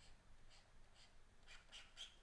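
Faint, short scratches of a stylus drawing lines on a digital drawing tablet, a few strokes in a row.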